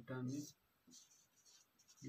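A short spoken word at the start, then a marker pen writing on a whiteboard: faint short scratches and squeaks as the strokes of a formula are drawn.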